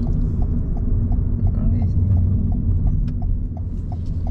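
A car's indicator clicking steadily, about three clicks a second, over the low rumble of road and engine noise inside the cabin.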